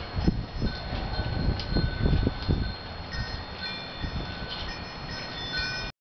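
Several bell-like chime tones ringing and overlapping, mostly from about halfway through, over a low rumble with a few dull thumps in the first half.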